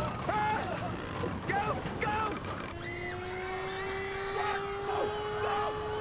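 Several people shouting in alarm. About three seconds in, a long steady tone starts under the shouts and keeps going, rising slightly in pitch.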